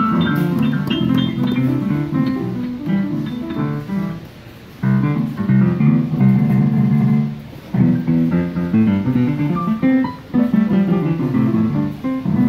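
Children banging on the keys of a Yamaha digital piano, striking clusters of notes at once in an irregular, tuneless way, mostly in the lower-middle range, with a short pause about four seconds in.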